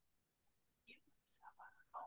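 Near silence, with a few faint whispered syllables in the second half.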